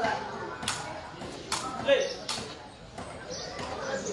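Three sharp knocks of a sepak takraw ball being struck, about a second apart, over low spectator chatter.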